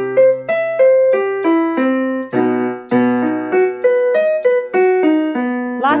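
Electronic keyboard with a piano sound playing the accompaniment for a vocal warm-up: rising and falling arpeggios of about three notes a second over a held low chord, which shifts to a new key every couple of seconds. This is the 1-3-5-8-10 lip-trill arpeggio exercise, being stepped up through the range.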